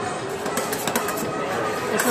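Steel spatulas tapping and scraping on the frozen stainless-steel plate of a rolled-ice-cream counter, a run of quick metallic clicks as the milk and pistachio base is chopped while it freezes. Background music and voices run underneath.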